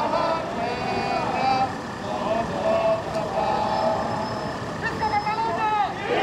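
Protest crowd chanting and shouting, many voices overlapping, over street noise.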